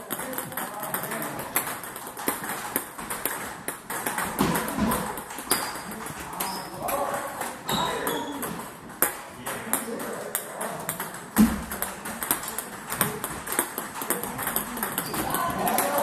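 Table tennis balls clicking sharply off paddles and tables in an irregular run of taps as a player practises serves, with other tables' rallies adding more clicks. People talk in the background of the hall.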